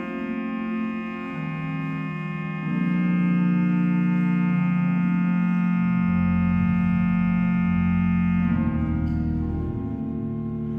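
Organ playing slow, sustained chords that swell about three seconds in, with a deep bass note entering about six seconds in.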